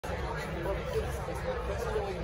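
Speech and chatter from people talking, over the murmur of a busy hall; one voice says "yeah".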